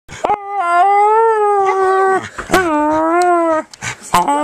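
A dog howling: two long, fairly level howls, the first about a second and a half long and the second about a second, with a brief break between them.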